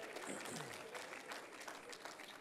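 Church congregation applauding, many hands clapping, with a few scattered voices calling out.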